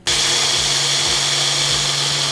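Bullet-style personal blender running, blending ice, coffee and chocolate milk into an iced cappuccino. The motor starts abruptly and runs at a steady pitch with a high whine.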